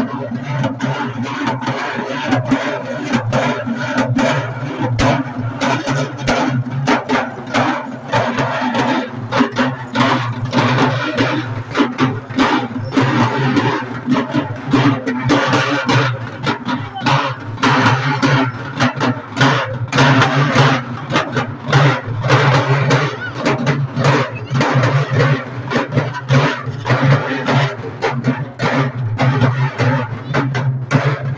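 Processional hand drums beaten fast by a group of drummers, a dense run of sharp strikes, over a steady low hum.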